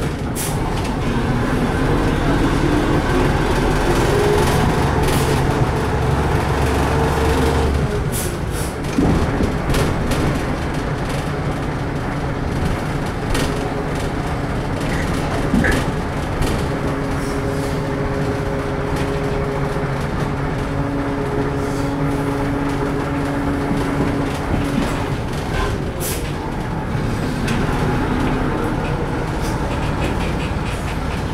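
Cabin sound of a LAZ-695T on the move: a whine that rises in pitch for the first several seconds as it gathers speed, over a low rumble that stops abruptly about eight seconds in. It then rolls on with a steadier whine and a few short knocks.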